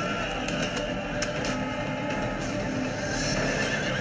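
Horses whinnying in a film battle scene, under a music score.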